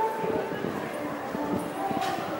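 Indistinct voices of several people talking.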